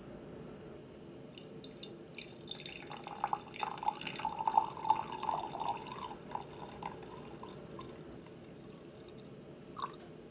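Water poured from a glass measuring-cup pitcher into a small glass jelly jar: a trickling splash that starts about two and a half seconds in, is loudest in the middle and tails off after about seven seconds as the pour stops.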